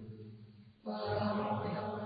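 Low, sustained chanting that starts suddenly about a second in: the customary drawn-out 'sādhu' response that closes a Theravada Dhamma talk.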